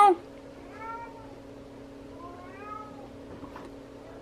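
Domestic cat meowing softly three times, the middle meow longer and drawn out, over a steady low hum.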